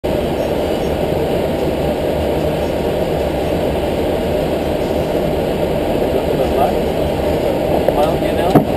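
Steady flight-deck noise of an Airbus A320-family airliner in flight: a constant rush of airflow and engine noise, heavy in the low and middle range.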